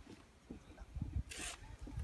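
Faint, irregular low rumbles and bumps on the microphone, with a short hiss about one and a half seconds in.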